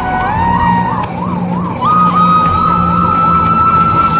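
Ambulance siren in a fast rising-and-falling yelp, about three cycles a second, with a steady higher tone sounding alongside that steps up in pitch about two seconds in.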